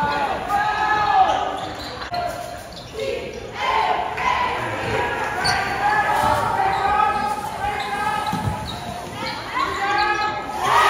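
Sounds of a live basketball game in a gym: the ball bouncing on the hardwood court, with players and spectators calling out.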